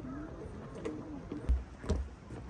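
A bird giving a few low, gliding calls over outdoor background noise, with two short low bumps near the end.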